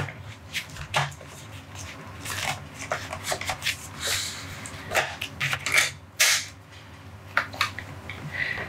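A disc book being slid into the slot of a box set's display base by hand: an irregular run of scrapes, rustles and sharp taps, with several louder knocks spread through.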